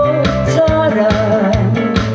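A woman singing a Korean trot song live into a handheld microphone over backing music with a bass line and a steady beat. Through the middle she holds one long, wavering note.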